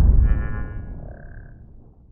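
Tail of a cinematic intro sound effect: a deep rumble fading away over about two seconds, with a short high tone about a second in.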